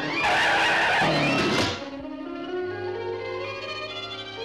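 Cartoon sound effect of a taxi speeding off: a loud noisy burst for about a second and a half that cuts off sharply, laid over an orchestral score. After that the orchestral music plays on alone with held notes.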